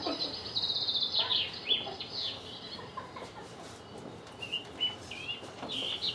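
High-pitched, bird-like chirps and squeals. A long wavering squeal runs through the first two seconds, then short chirps rise and fall near the end.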